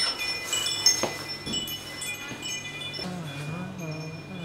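Door chimes on a shop's entrance door ringing as the door swings: many short, high ringing notes at different pitches, each dying away, with a knock about a second in.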